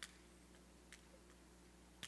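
A few faint, sharp clicks, about one a second, amid near silence: a lighter being clicked over and over without catching, as someone tries to light a candle.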